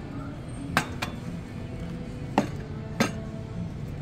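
Lid of an insulated tumbler clicking as it is worked by hand: four sharp clicks, two close together about a second in and two more later on.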